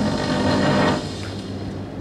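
Rustling handling noise through a handheld microphone for about the first second, as its holder moves, then a steady low hum.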